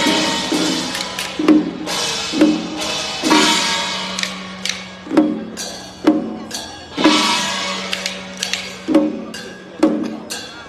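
Chinese procession percussion: drum beats and crashing cymbals struck in an uneven rhythm, about once a second, with the cymbals ringing on after some strikes.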